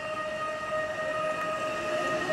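A steady, high-pitched tone held at one pitch, with overtones above it, over faint background noise.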